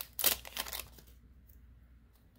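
Foil wrapper of a Pokémon booster pack crinkling as the stack of cards is slid out, a few quick rustles in the first second.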